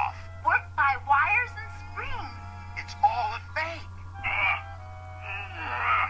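Cartoon character dialogue over background music, with two short hissing sounds in the second half and a steady low hum underneath.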